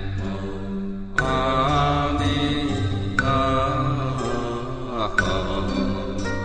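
Buddhist devotional chant set to music: a voice sings long, gliding notes over instrumental accompaniment, with a new note starting every second or two.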